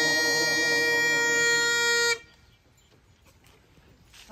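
Highland bagpipes playing a sustained note over their drones, which cuts off suddenly about two seconds in.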